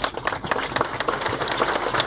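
Crowd applauding: many hands clapping at once, steady and dense.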